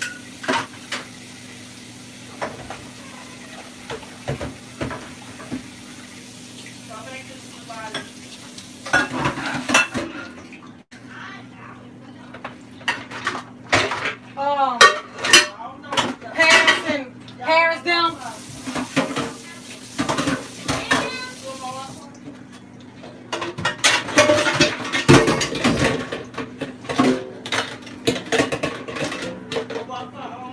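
Pots, pans and utensils clattering and clinking while dishes are washed by hand in a kitchen sink: a string of irregular knocks and clinks, busiest in the second half.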